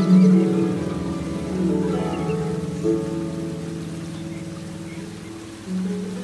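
Slow solo harp: plucked notes ringing and dying away, with a few new notes about two and three seconds in, the playing growing softer until fresh notes enter near the end. A steady rush of flowing water, like a river, runs beneath the harp.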